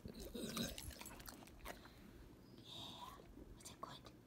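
A yellow Labrador retriever chewing a bite of sausage patty taken from the hand: a quick run of quiet wet mouth clicks in the first second, then a short soft breathy sound about three seconds in.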